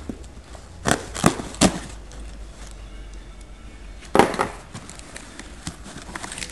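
Packing tape on a cardboard box being cut with a knife and torn: three short sharp rips in the first two seconds, then a louder tearing rip about four seconds in as the cardboard flaps are pulled open.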